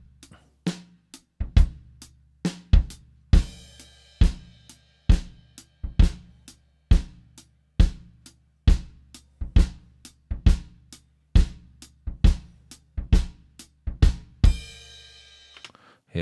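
Multitrack recording of a live drum kit played back: kick drum and overhead mics with the snare heard through the overheads, run through a bus compressor. It keeps a slow, steady beat with a strong hit just under once a second and lighter hits between, and a cymbal wash swells up a few seconds in and again near the end.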